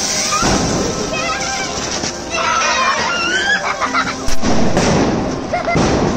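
A spark-spraying ground firecracker fizzing and crackling, with high, squeaky shouts in the middle and one sharp bang about four seconds in. Background music plays throughout.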